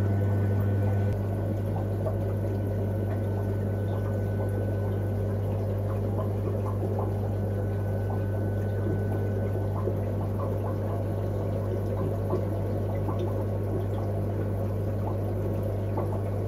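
Aquarium filtration running: water trickling and bubbling over a steady low hum, which steps slightly quieter about a second in.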